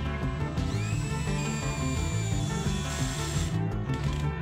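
DeWalt cordless drill spinning up about half a second in and running with a steady whine as it drills a hole, stopping after about three seconds, under background music.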